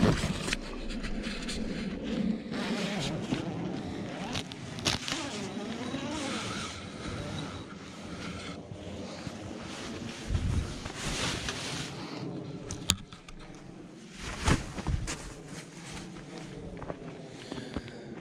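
Heavy canvas of a teepee tent rustling and scraping as its door is unzipped and pulled open, irregular handling noise with scattered clicks.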